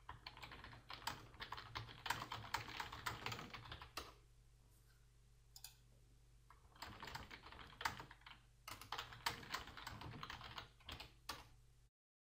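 Quiet typing on a computer keyboard in two runs of rapid keystrokes: one lasting about four seconds, then, after a short pause, another from about seven seconds in to near the end.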